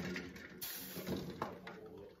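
Metal ladle clinking lightly against a steel pot and a bowl of ice water while scooping hard-boiled eggs out of hot water, a few short clinks in all.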